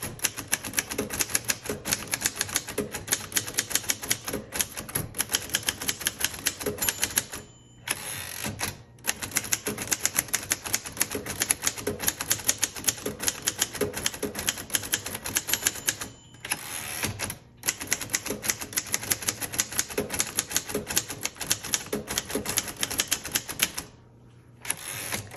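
1950 Royal Quiet Deluxe portable manual typewriter being typed on at a brisk pace, its type bars striking several times a second in long runs broken by a few short pauses.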